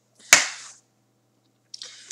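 A single sharp click about a third of a second in, fading quickly.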